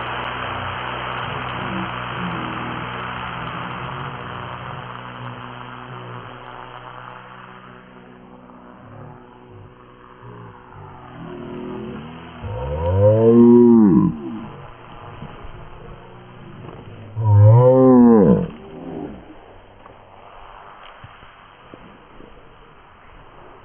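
RC model plane's motor running at full power through the hand launch, fading as the plane climbs away, then two loud rise-and-fall sweeps in pitch about five seconds apart as the throttle is opened and closed on low passes.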